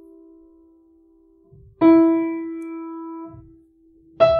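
A single piano note, the E above middle C, struck about two seconds in and left to ring and die away. The fading tail of the chord played just before is faintly audible at the start.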